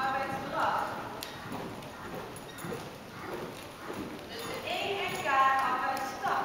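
Horse's hoofbeats at the trot on the arena's sand footing as the horse comes past, with people's voices talking about half a second in and again near the end.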